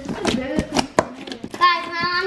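Fingers poking and squeezing a heavy mass of slime in a plastic tub: a quick run of wet clicks and pops. A voice starts up near the end.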